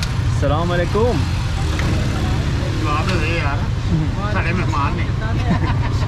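Auto-rickshaw engine idling with a steady, low pulsing rumble, with voices talking over it in a few short bursts.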